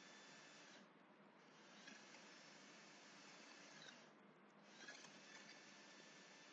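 Near silence: a steady recording hiss with a few faint computer keyboard clicks while text is typed and deleted.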